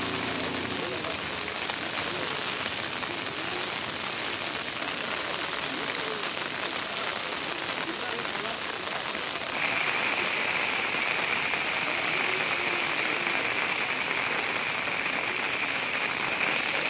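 Steady rain hiss with faint voices in the background; about ten seconds in a steadier, higher hiss joins and the sound grows a little louder.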